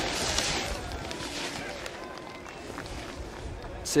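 Snowboard sliding and scraping across packed snow as the rider comes out of the pipe. It is a steady hiss, loudest at first and fading as he slows down.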